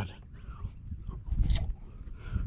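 Low bumps and rustling from handling close to the microphone, loudest about one and a half seconds in with a short click, over a steady high-pitched insect drone.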